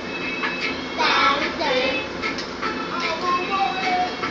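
A young girl singing along to reggae music that has a steady beat.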